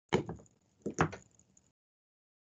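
Two sudden knocks or thumps about a second apart, each dying away quickly.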